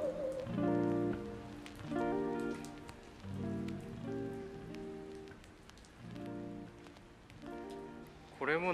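Soft background music: sustained pitched notes, a new chord or note cluster about every second and a half, growing quieter toward the end.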